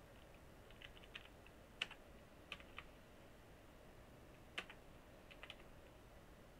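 Faint, irregular keystrokes on a computer keyboard as an email address is typed: about a dozen key presses, with a pause of a second or so in the middle.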